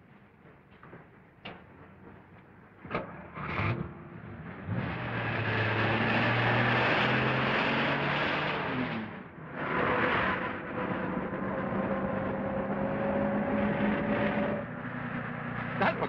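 A car door shutting with a thud about three seconds in, then the old sedan's engine starting up and the car pulling away, loud at first, with a brief drop just after halfway. It then runs on steadily, its hum rising slowly in pitch.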